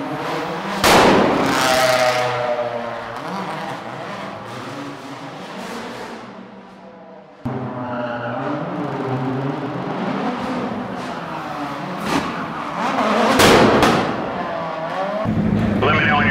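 Ford Focus rally race car engine passing at speed through a stone road tunnel, echoing, its note falling as it goes by and fading. After a cut about seven seconds in, it builds again to a second loud pass near the end.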